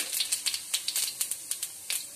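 Cumin seeds sizzling and crackling in hot oil in a kadai with dried red chillies and bay leaves, the tempering (phoron) frying, with irregular sharp pops over a steady hiss.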